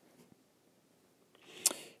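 Quiet room tone, then near the end a short breathy intake with a sharp mouth click, as the narrator draws breath to speak.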